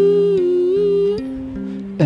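A man's wordless hummed vocal note, held for about a second and a wavering slightly, over a repeating pattern of plucked electric bass notes.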